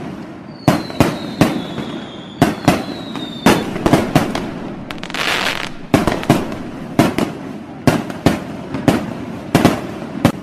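Fireworks and firecrackers going off in a run of sharp, irregular bangs, with a long whistle falling slowly in pitch in the first few seconds and a brief hiss about halfway through.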